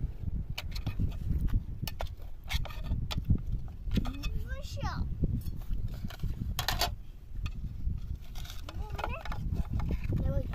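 Scattered sharp knocks and clicks over a low rumble, with two short calls that swoop in pitch, one about four seconds in and one near the end.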